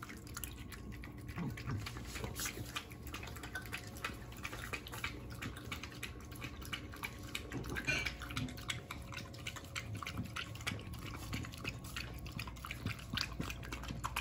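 A dog lapping and slurping a soupy raw meat meal from a glass bowl: a fast, continuous run of wet laps and clicks, with a louder knock about eight seconds in.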